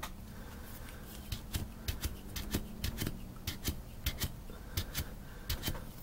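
Hands handling a 1966 Dodge A100's single-pot brake master cylinder, the piston pressed in its bore: irregular small clicks and scrapes of metal parts, over a faint steady hum.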